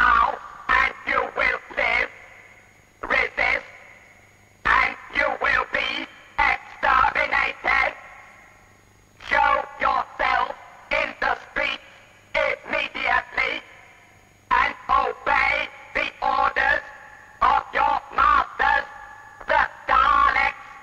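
A Dalek voice making a broadcast announcement over a radio set: harsh, ring-modulated, clipped syllables delivered in short phrases with pauses between them.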